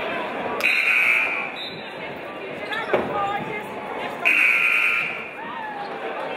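Gymnasium scoreboard buzzer sounding twice, each blast just under a second long, about three and a half seconds apart, over crowd chatter, with a single sharp thud about three seconds in.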